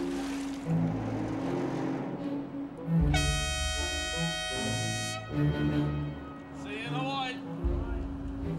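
One long ship's horn blast, about two seconds, starting about three seconds in, over steady background music.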